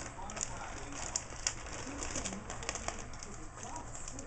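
Craft supplies and their packaging being handled: scattered light clicks and rustles, with a few faint short low sounds in the background.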